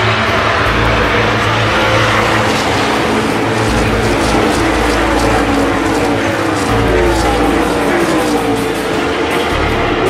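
A pack of NASCAR Cup stock cars passing at racing speed, the pushrod V8 engines blending into one loud, continuous sound whose pitch falls as the cars go by.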